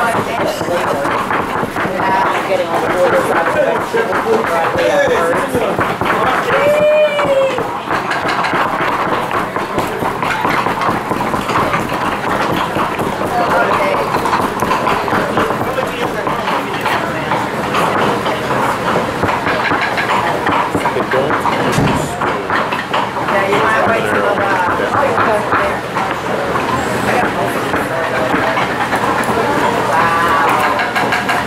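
Kitchen knives chopping vegetables on cutting boards and pestles working in stone molcajetes: a dense, continuous run of small quick knocks under overlapping chatter from a group of people.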